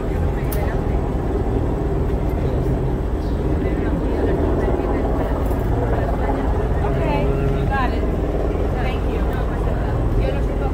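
Steady low rumble of street traffic and vehicles, with indistinct voices of people around; a voice rises and calls out briefly about seven seconds in.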